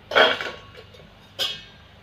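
Steel perforated skimmer knocking against a steel bowl: two metallic clanks a little over a second apart, the first louder, each with a brief ring.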